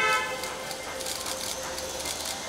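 A short, loud horn toot right at the start, then a low background of crowd noise.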